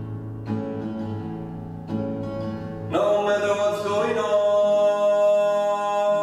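Acoustic guitar strummed, two chords ringing out, then about halfway a long wordless sung note comes in and is held steady over the guitar.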